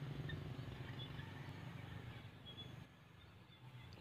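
Faint outdoor background: a low steady rumble with a few faint, short bird chirps, dropping to near silence about three seconds in.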